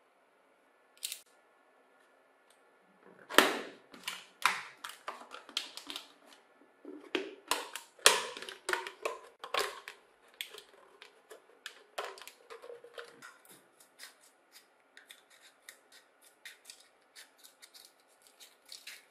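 A thin plastic soda bottle crackling and snapping sharply as it is handled and sliced with a utility knife. Near the end comes a steady run of small, quick snips as scissors cut through the plastic.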